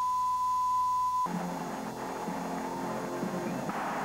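Steady line-up test tone, the reference tone played with colour bars on a broadcast master tape, cutting off about a second in and giving way to background music.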